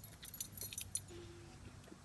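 Light metal jingling: a quick run of small clinks in the first second, then dying away.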